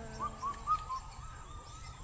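Faint bird calls: a short run of brief whistled notes, about four in the first second, then trailing off.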